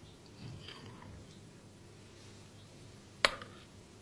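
A metal spoon working tomatoes in glass Kilner jars: faint soft squishing, then one sharp click a little over three seconds in.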